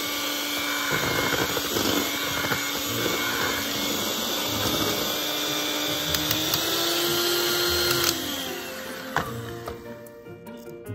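Betty Crocker electric hand mixer running, its beaters churning thick batter in a plastic bowl, with a steady hum whose pitch rises a little before the mixer stops about eight seconds in. A sharp click follows near the end.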